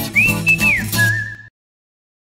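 Short music jingle for a closing logo: a high, sliding single-note lead melody over bass notes and light percussion, cutting off abruptly about one and a half seconds in.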